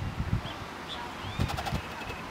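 A few short bird chirps over irregular low, dull thuds, with a quick run of sharp clicks about one and a half seconds in.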